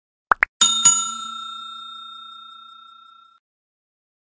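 Two quick click-pops, then a bright bell struck twice in quick succession, ringing out and fading away over about two and a half seconds. These are the button-click and notification-bell sound effects of a subscribe-button animation.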